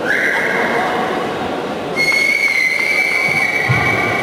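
Whistle blasts over the noise of a sports hall: a short one that rises slightly in pitch at the start, then a longer, louder, steady one from about halfway, likely marking a stop in the bout.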